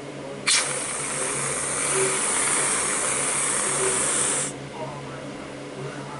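Whipped-cream aerosol can spraying: a steady hiss that starts abruptly about half a second in and cuts off about four seconds later.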